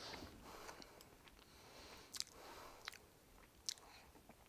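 Faint mouth sounds of a man tasting mashed potato off a spoon: soft smacking and a few small clicks against near silence.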